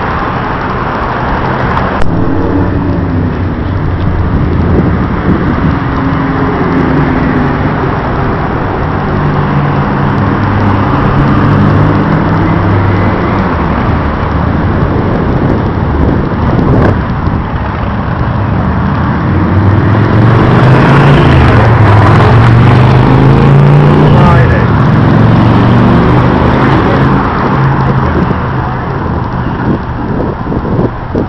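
City road traffic: motor vehicles driving past, their engine pitch rising and falling as they pass. The loudest pass comes about twenty seconds in.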